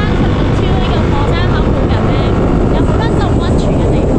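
Loud, steady wind buffeting the microphone on a moving motorbike, mixed with road and engine noise. A woman's voice is partly buried beneath it.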